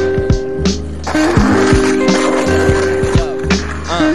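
Skateboard wheels rolling on a concrete park surface, starting about a second in and easing off near the end, under background music with a steady beat.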